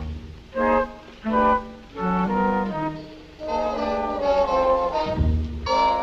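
Orchestral background score with brass and woodwinds: a few short, separate notes, then longer held notes swelling into a sustained chord near the end.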